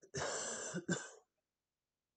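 A man coughing and clearing his throat, two quick bursts with the first one longer: his throat is catching on the heat of a spicy hot sauce he has just tasted.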